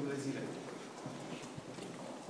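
Footsteps on a hard floor as people walk, several soft steps in the second half, under faint voices.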